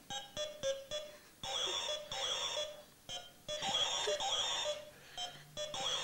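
Electronic wire-loop game sounding several short electronic buzzing tones, each about half a second to a second long, with short clicks between them. The tones are the game's alarm when the wand touches the wire.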